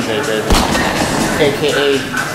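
A man talking, with one sharp thump about half a second in.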